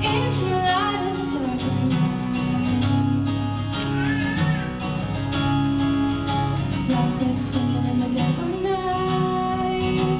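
Acoustic guitar strummed in steady chords, accompanying a girl singing a melody into a microphone.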